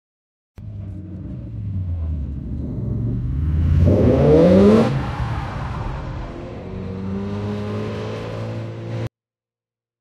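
AI-generated car engine sound from a text-to-audio model: an engine runs, swells to its loudest with a rising rev about four seconds in, then falls back to a steadier run. It cuts off suddenly about a second before the end.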